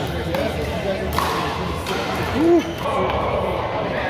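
Pickleball paddles popping against a plastic ball during a rally, a few sharp hits echoing in a large gym hall. About halfway through comes a brief rising-and-falling squeak, the loudest sound, over a murmur of voices.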